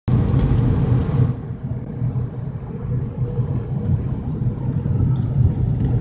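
Car cabin noise while driving: a steady low rumble of tyres and engine, with a little more hiss in roughly the first second.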